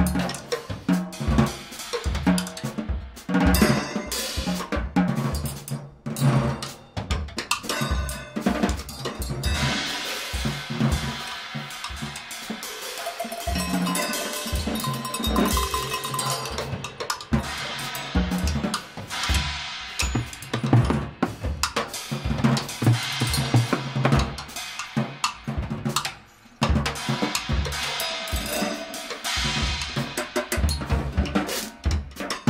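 Drum kit played busily in free improvisation, a dense run of snare, bass drum, tom and cymbal strokes, with pitched notes from a wooden xylophone (gyil) now and then. The playing briefly thins out near the end before picking up again.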